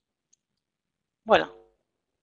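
A man's brief wordless vocal sound, a short hum or grunt falling in pitch, about a second and a quarter in, preceded by a faint click.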